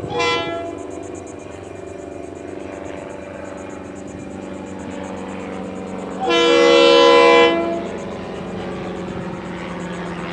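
Air horn of Florida East Coast Railway diesel locomotive 425: a brief toot at the start, then one long blast of about a second and a half just past the middle. Under it runs the steady drone of the locomotive's diesel engine as it approaches hauling ballast cars.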